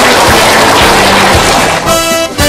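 Loud theme music: a dense cymbal-like wash over a steady drum beat, with held chords coming in near the end.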